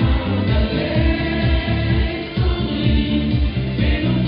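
Dance music with singing over a steady bass beat.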